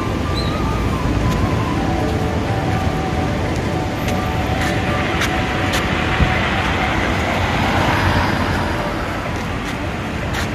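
Street traffic: cars driving past on a road over a steady wash of road noise, swelling a little as one passes near the end.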